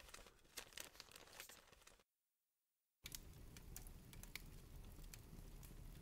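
Near silence: faint scattered crackling and clicks, cutting to total silence for about a second partway in, then a faint hiss with light crackles resuming.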